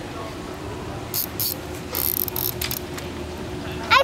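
Child's plastic toy fishing reel being wound in, giving a few scattered clicks and rattles over a steady low background hum.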